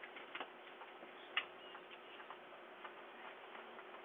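Faint, irregular clicks and taps of fingers on a handheld phone, with one louder click about a second and a half in, picked up by a doorbell camera's microphone over a steady low hiss.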